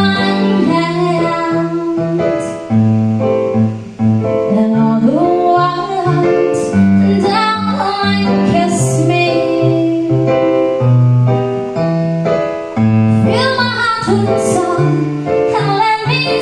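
A woman singing a melody with electronic keyboard accompaniment playing piano-voiced chords, the held low notes changing every second or so.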